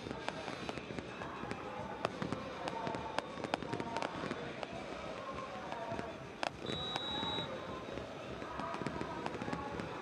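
Fireworks going off in irregular sharp bangs and crackles throughout, over a steady stadium crowd hum.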